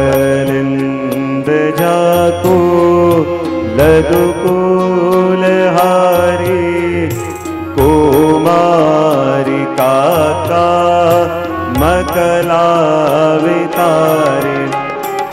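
A male voice singing a slow devotional Krishna kirtan with long, ornamented held notes over steady instrumental accompaniment.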